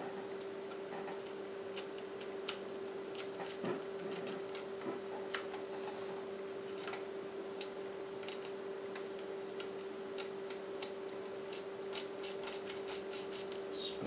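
Faint, irregular small metallic clicks and ticks as a small nut and lock washer are threaded by hand onto the shaft of a ball-bearing VFO encoder in an Elecraft KX3, over a steady hum.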